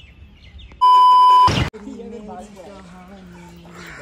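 A loud, steady electronic beep at about 1 kHz, edited into the soundtrack, lasting under a second about a second in. It ends in a short burst of noise. Low voices talk before and after it.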